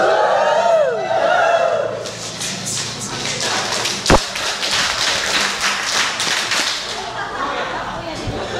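Group of people calling out and clapping. A voice whoops with a falling pitch at the start, then come quick, scattered claps and shuffling, with one loud sharp thump about four seconds in.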